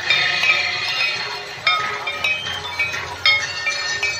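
Many metal bells of the Ganga aarti ringing together, struck over and over, over the steady noise of a large crowd.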